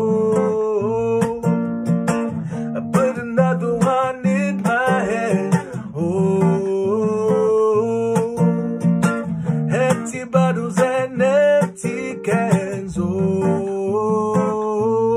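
A man singing long, drawn-out notes that slide between pitches, with no clear words, over a strummed acoustic guitar.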